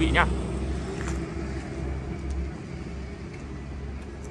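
Steady low rumble of a vehicle engine running, easing off a little after about two seconds.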